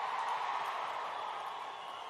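Large rally crowd cheering after a slogan, the noise slowly dying away.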